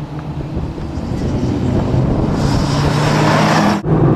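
A sports car's engine approaching at speed on a race track, growing steadily louder with its note rising slightly. It breaks off abruptly near the end.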